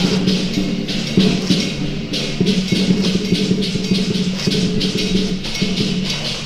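Temple procession music: a sustained low melody over percussion keeping a steady beat, with bright cymbal-like strikes several times a second.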